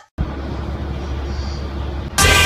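Steady low rumble of a city bus's engine and running noise, heard from inside the passenger cabin. It starts a moment in, after a short silence.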